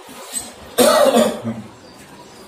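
A man coughs once, short and loud, about a second in, over faint rubbing of a cloth wiping a whiteboard.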